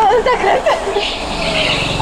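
Go-kart engine running and growing louder about halfway through as a kart comes up close, with voices over it in the first second.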